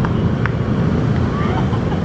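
Steady low outdoor rumble, from wind on the microphone or nearby traffic, with faint voices and laughter from people close by.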